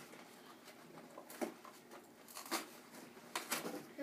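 Faint knocks and rustles of a toddler clambering onto a small plastic slide, a few light taps about a second apart against quiet room hiss.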